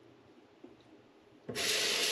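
Bathroom sink faucet turned on about three-quarters of the way in, water then running steadily into the basin. Before that it is nearly quiet, with one faint knock.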